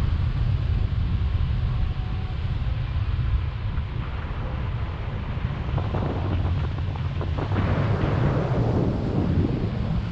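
Airflow of a paraglider in flight buffeting the camera's microphone: a steady, heavy low wind rumble. Around six seconds in it turns rougher and hissier for a few seconds.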